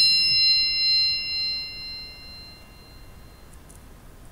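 The quiz's 'bing' cue: a single high, bell-like ding that rings out and fades away over about two and a half seconds. It is the signal to pause the video and write down an answer.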